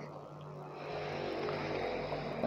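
A low, steady hum with faint background noise, picking up slightly about a second in.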